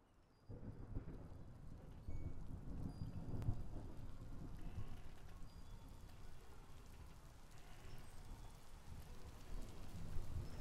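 Ambient rain recording with low rumbling thunder, starting about half a second in.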